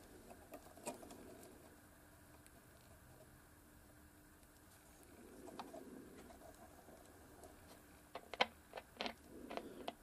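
Faint crackling and a few sharp clicks near the end, coming through a suitcase record player's small speakers at low volume as the pins of its newly fitted ceramic cartridge are touched. It is a quick test that the cartridge and its wiring pass signal, and it sounds like it is working.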